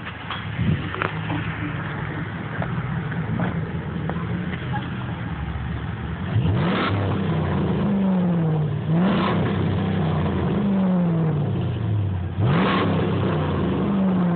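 Dodge Ram pickup's 5.7-litre Hemi V8 idling at the exhaust tip, then revved three times, each rev rising quickly and sinking slowly back toward idle.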